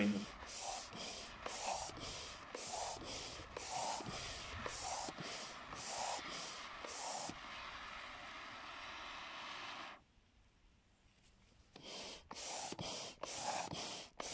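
A hand air pump blowing air through a hose nozzle onto glowing sodium in a steel can, in short hissing puffs about two a second. About halfway through the puffs give way to a steady hiss, then drop out briefly, and the puffs resume near the end.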